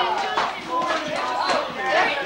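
Indistinct chatter: several voices talking over one another, no words clear.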